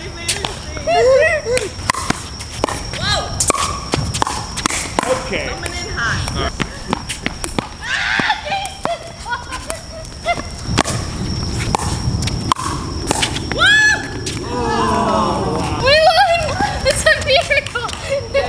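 Pickleball play: a series of sharp pops as paddles strike the plastic ball and it bounces on the hard court, mixed with players' voices, which turn to excited high-pitched calls near the end.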